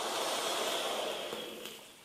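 A long breath out near the microphone: a soft hiss that swells, holds and fades away over about two seconds.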